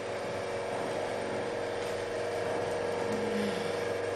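Electrical heat-treatment apparatus humming steadily, a machine drone of several even tones.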